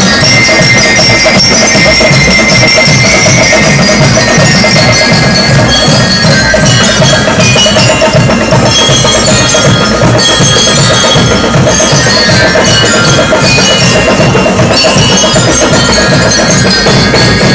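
Marching band playing: bell lyres ring out a melody over a steady beat of snare and bass drums with cymbals.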